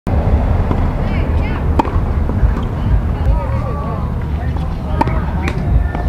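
Two sharp pops of a tennis racket striking a ball, about three seconds apart, over a steady low rumble.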